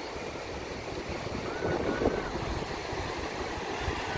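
Surf breaking on the shore mixed with wind buffeting the phone's microphone: a steady rushing noise with an uneven low rumble. A faint short high-pitched call sounds twice near the middle.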